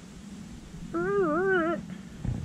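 Domestic turkey giving a single wavering, whining call lasting just under a second, starting about a second in.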